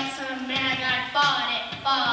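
A child's voice over a microphone, with music underneath.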